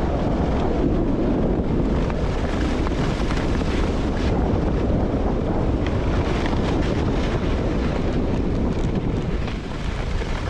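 Wind rushing over the microphone of a camera worn by a skier going fast down a groomed run, a loud, steady rumble, with the skis running over the packed snow beneath it.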